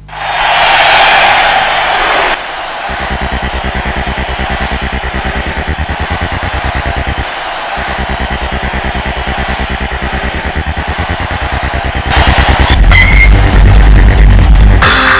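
Electronic theme music for a TV show's opening titles: a rushing whoosh, then a fast, steady pulsing beat that grows louder with heavy bass near the end.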